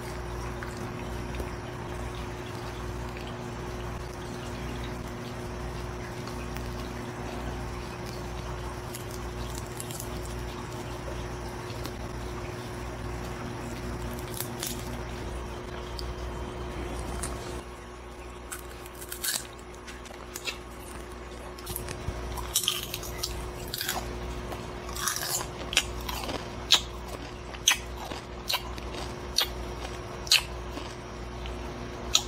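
Crunching and chewing of a dried, salt-seasoned tarantula: a run of sharp, irregular cracks and crackles in the second half, loudest near the end. Before that, a steady electrical hum with a few faint handling clicks.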